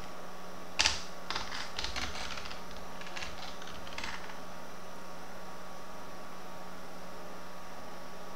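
Computer keyboard typing: about a dozen quick keystrokes over roughly three seconds, the first the loudest, then stopping. A faint steady low hum runs underneath.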